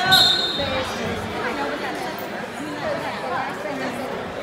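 Spectators shouting and calling out in a large gym hall, with a brief shrill whistle blast right at the start, the kind a wrestling referee blows to stop the action.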